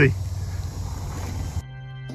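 Low, steady rumble of wind on the microphone and road noise from a bicycle riding over a bumpy dirt road. A little over a second and a half in, it cuts off abruptly and background music begins.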